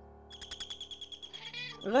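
Doorbell ringing with a rapid electronic trill, about a dozen pulses a second, for about a second and a half. It announces someone at the door.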